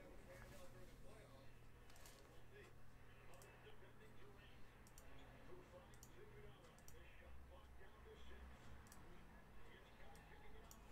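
Near silence: a low room hum with faint, scattered clicks, roughly one every second or two.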